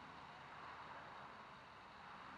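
Near silence: a faint steady hiss of background noise.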